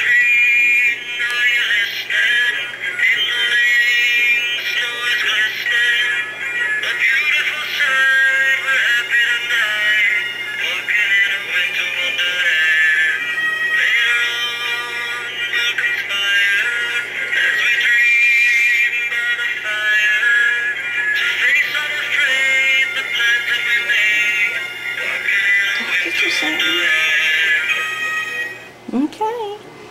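A light-up musical snowman figurine's small built-in speaker playing a Christmas song with electronic singing, thin-sounding with little bass, stopping near the end.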